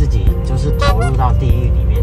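A man talking over background music, with the steady low rumble of a moving car heard from inside its cabin.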